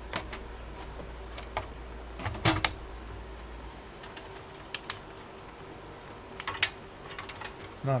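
Scattered sharp clicks and knocks of computer hardware being handled inside a desktop case: a graphics card being seated into its motherboard slot and power cable connectors being moved around. The loudest knock comes about six and a half seconds in.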